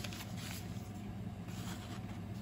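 A steady low background hum with a few faint rustles of a small plastic zip bag being handled.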